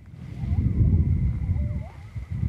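Wind buffeting the microphone, an uneven low rumble that swells and dips, with a few faint short whistled glides and a thin steady high tone above it.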